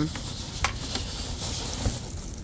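Rustling and light crinkling as a hand shifts plastic-wrapped flocked foam eggs in a cardboard display box, with a couple of faint clicks.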